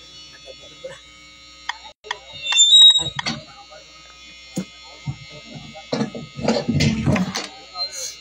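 People's voices, with a loud burst of voice about three seconds in and more talking near the end, over a steady high-pitched whine.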